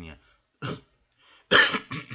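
A man coughing: a short cough about half a second in, then a much louder cough near the end.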